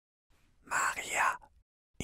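A man whispering a few words, lasting about half a second.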